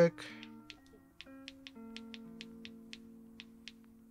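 Background music: soft held synth chords that change a few times, over a light ticking beat of about four ticks a second.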